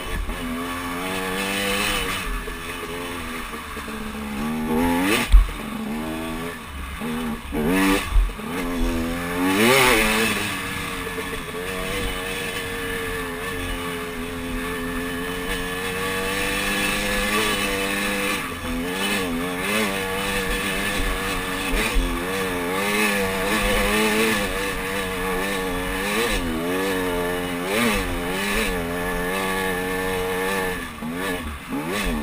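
Dirt bike engine running under load on a rough trail, its pitch rising and falling again and again as the throttle is worked. There are a few sharp knocks about five and eight seconds in.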